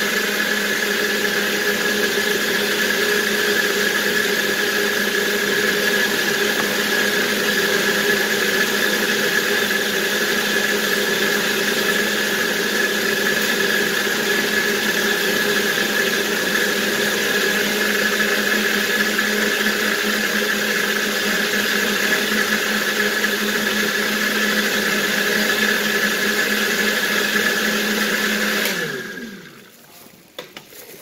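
Countertop blender motor running at a steady high speed, blending a thick orange-peel mixture. Near the end it is switched off and the motor spins down, its pitch falling away.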